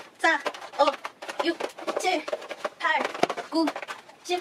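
A woman speaking in short separate syllables, counting aloud, here in Chinese; nothing but speech.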